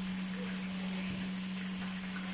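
Fish frying in hot oil in a pan, a steady sizzling hiss, with a constant low hum underneath.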